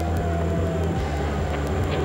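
Steady low hum with a faint steady higher tone over it, and no speech.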